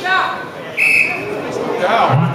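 A wrestling referee's whistle: one short, high blast about a second in, over voices in the hall.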